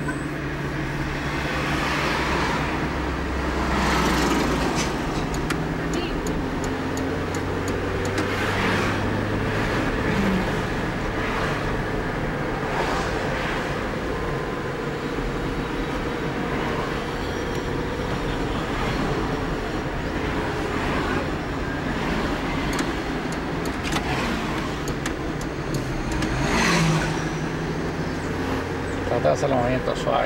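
Car engine and road noise heard from inside the cabin while driving, a steady low hum with a few swells of rushing noise that rise and fade.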